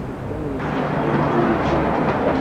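Outdoor city-street background noise: a low steady rumble with faint, indistinct voices. The noise grows thicker about half a second in.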